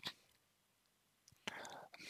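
Near silence in a pause in a man's speech, with a faint intake of breath near the end.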